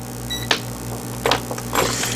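Digital multimeter (ANENG AN8009) switched on with a short electronic beep, followed by three sharp clicks and knocks as the meter is handled.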